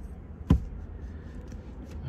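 A single sharp click or knock about half a second in, over the steady low hum of a car cabin.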